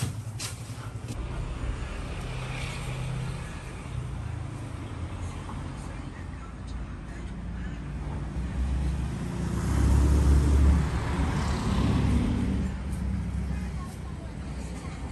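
Low engine rumble of a vehicle passing close, swelling to its loudest about two-thirds of the way through, with voices in the background and a few sharp clicks in the first second.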